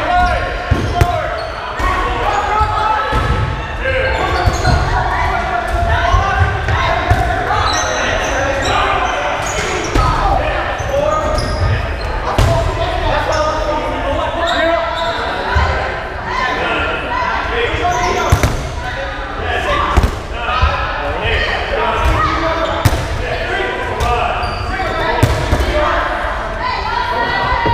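Dodgeballs being thrown and bouncing on a wooden gym floor, many sharp hits scattered throughout, mixed with players' shouts and chatter echoing in a large gymnasium.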